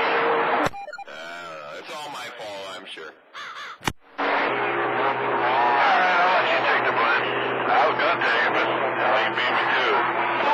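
CB radio receiving long-distance skip on channel 28: garbled, overlapping voices with steady whistling tones under them. A strong signal cuts off with a click just under a second in, leaving weaker warbling voices. Another click comes just before four seconds in, and a strong signal comes back with more jumbled talk.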